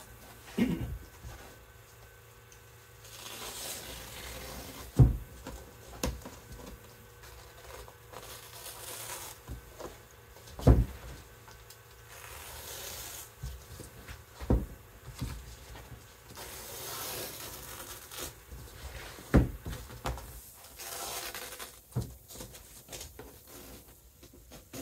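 Utility knife cutting through foam padding (quarter-inch headliner foam) on a plywood door panel: repeated soft scratchy rubbing and tearing strokes, with a few sharp knocks against the board.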